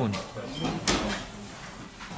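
A single sharp knock about a second in, short and clear, with brief speech just before it.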